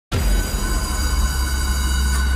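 A loud, steady low rumble with sustained high tones layered over it, cutting in abruptly just after the start.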